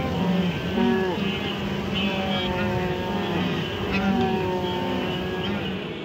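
A large herd of wildebeest calling, with many overlapping grunting calls over a steady, dense rumble of the moving herd.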